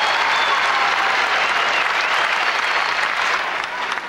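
Large arena crowd applauding at the end of an uneven bars routine, a steady, dense clapping that eases slightly near the end.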